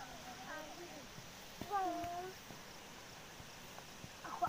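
Young children's voices, with one drawn-out high call a little under two seconds in as the loudest sound.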